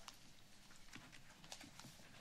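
Near silence: quiet room tone with a few faint, scattered clicks and taps.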